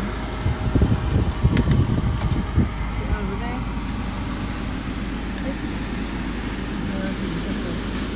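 Steady engine and road noise heard from inside a slowly moving car's cabin, with some irregular low thumps and rumbles in the first few seconds.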